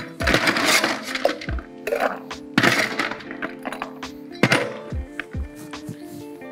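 Ice cubes being scooped and dropped into a metal Boston shaker tin, rattling and clinking three times, about a second or two apart. Background music plays under it.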